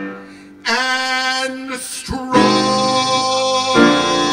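A male singer performing a show tune with piano and upright bass accompaniment. After a brief hush he belts long held notes, with a short breath between them.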